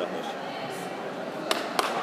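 Murmur of voices in a large sports hall, then sharp hand claps starting about one and a half seconds in, twice before the end and carrying on at about three a second.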